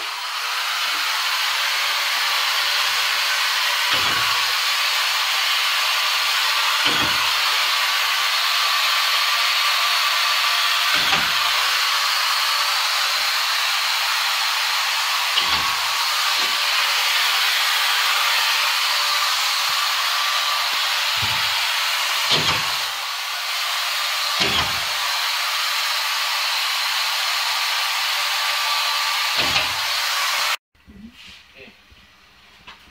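Steady, loud rushing noise of a running machine, like a fan or blower, with faint steady tones held within it. Dull low thumps come every few seconds over it.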